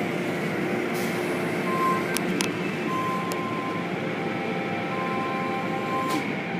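Automatic car wash heard from inside the car: a steady rush of water spray and machinery on the body and windshield, with a few sharp ticks.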